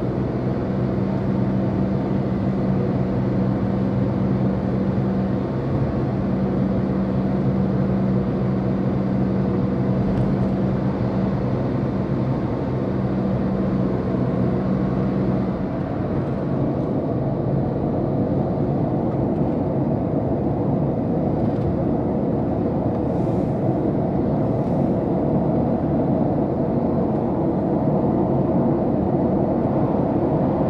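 Road noise of a moving car: a steady rumble of tyres and engine, with a low hum that drops out about halfway through.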